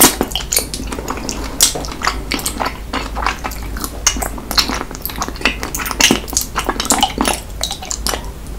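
Close-miked wet sucking and slurping of soft jelly from a small bear-shaped jelly, a dense, irregular run of sticky mouth clicks and smacks, a few much sharper than the rest.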